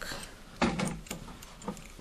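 Small metal parts of a homemade steel-channel vise scraping and clicking as a piece is fitted and a screw is turned by hand, with a louder rasp a little over half a second in and a short click near the end.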